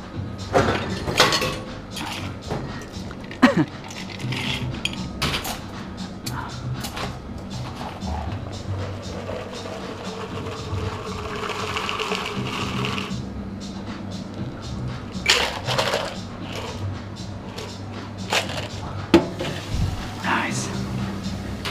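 Cocktail bar-work over background music: sharp clinks and knocks of a steel shaker tin and glassware, with a cocktail strained from the shaker over ice cubes in a rocks glass around the middle.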